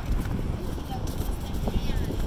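Outdoor pedestrian ambience on a pier walkway: a low, uneven rumble of wind on the phone microphone under indistinct voices of passersby, with scattered clicky sounds.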